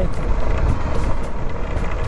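Motorcycle engine running steadily under way, mixed with wind rushing over the microphone, as a loud, even rumble.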